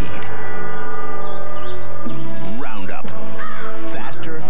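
A held musical chord, then from about halfway crows cawing several times over the music.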